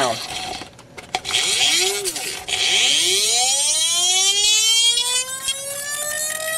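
Rodin-coil sphere-spinner double-pulse motor whining as its sphere spins up: a pitched tone with several overtones that climbs steadily in pitch from about two and a half seconds in. Before that there is a brief drop-out with a few clicks, around a second in.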